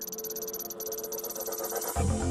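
Synthesized intro sound design: a steady electronic drone with rapid high fluttering ticks, slowly growing louder and building to a heavy bass hit at the very end.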